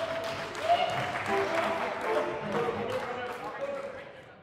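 Audience applause mixed with raised voices from the crowd, fading away near the end.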